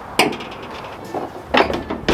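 Hard knocks and clunks of a Yeti hard-sided plastic cooler being handled: a sharp knock about a quarter second in, then further clunks in the second half, the loudest near the end.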